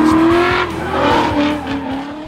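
A car's engine held at high revs with tyres squealing as it drifts, a steady wavering pitch that eases off near the end.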